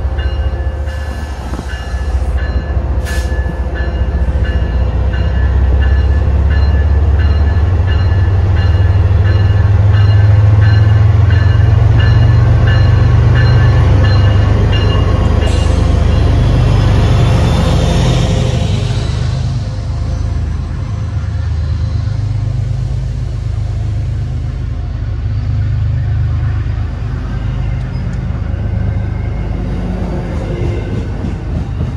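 MBTA commuter train led by an MPI HSP46 diesel locomotive arriving past the platform: the locomotive's engine rumble builds, is loudest about halfway as the locomotive goes by, then gives way to the lighter rolling of the bilevel coaches. A high ringing repeats about twice a second through the first half.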